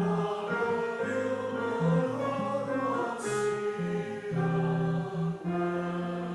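Congregation singing a hymn to organ accompaniment, the voices held note by note over long, steady bass notes that step from pitch to pitch.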